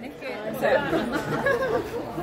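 Several people chatting at once: overlapping voices with no other distinct sound.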